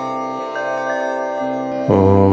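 Meditative Om chant: a long held tone, steady and even, with a new, louder chanted 'Om' starting just before the end.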